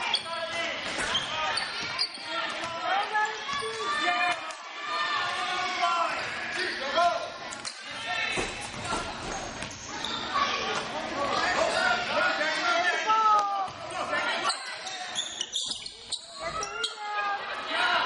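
A basketball bouncing on a hardwood gym floor during play, with the voices of spectators and players throughout.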